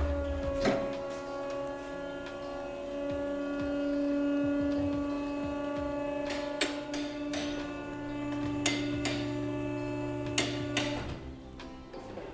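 Electric-hydraulic scissor car lift running as it raises the car: a steady motor-and-pump hum that starts suddenly and stops about a second before the end, with a few sharp clicks in the second half.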